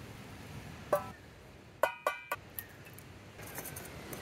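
Metal camp cookware clinking. There is a short ringing clink about a second in, then a louder clink near two seconds that rings briefly, followed by a few lighter taps.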